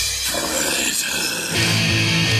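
Black/death metal album recording: after a drum passage breaks off, a rough, noisy stretch runs for about a second and a half. Then distorted electric guitars come in with sustained chords.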